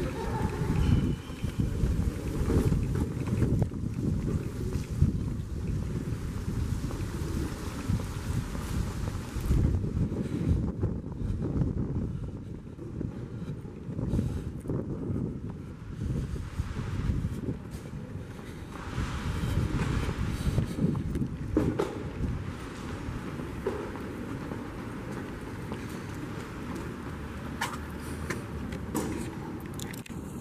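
Wind buffeting the camera microphone outdoors: a low, uneven, gusting rumble.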